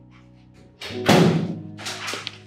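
Background film score with a steady held tone, and a loud thump about a second in that rings on briefly.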